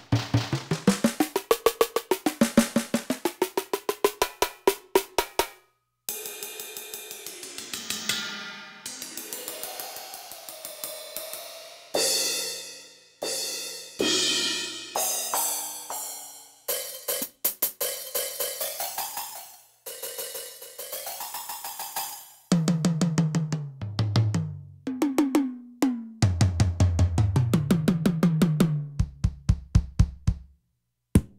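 Yamaha DTX400K electronic drum module sounds, played by a drumstick on a pad while the tuning is changed in the app. First comes a snare struck in a fast run whose pitch slides down and back up, then a crash cymbal hit repeatedly with its pitch bending, then a kick drum in the last seven seconds or so, stepping between lower and higher pitches. The voices are being retuned to build a drum and bass style kit.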